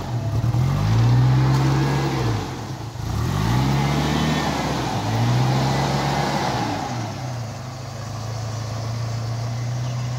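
Nissan Terrano 4x4's engine revving up and falling back three times, then running at a steady speed from about seven seconds in.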